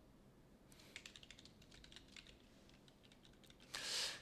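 Faint typing on a computer keyboard: a quick run of keystrokes about a second in, then a few scattered ones. Near the end comes a short, louder hiss.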